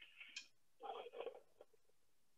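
Near silence: room tone, with two faint, short breathy sounds, one at the very start and one about a second in.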